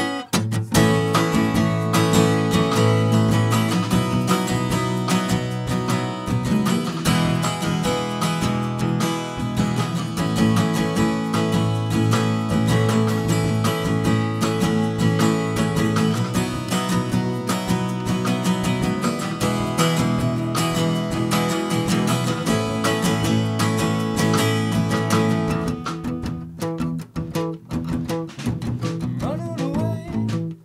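Instrumental band intro of strummed acoustic guitar with drums keeping a steady beat. Near the end the playing drops back into sparser hits with short gaps.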